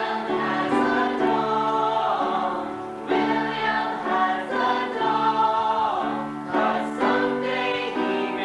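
A stage musical's cast singing together as an ensemble over instrumental accompaniment. The sung phrases break off briefly about three seconds in and again near the end.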